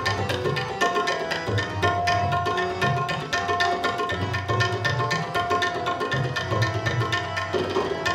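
Harmonium and tabla playing an instrumental passage of kirtan: the harmonium holds steady reed notes of the melody while the tabla keeps up a rapid, even run of strokes.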